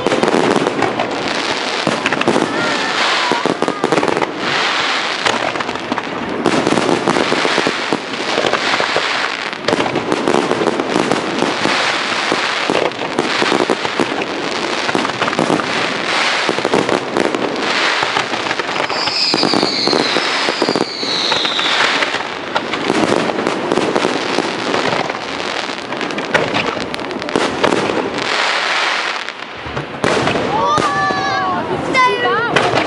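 Aerial fireworks display: a continuous barrage of bangs and crackling from shells bursting overhead. A couple of falling whistles come about two-thirds of the way through.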